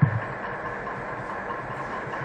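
Steady background noise with a faint hum and hiss: the room tone heard in a pause between spoken sentences.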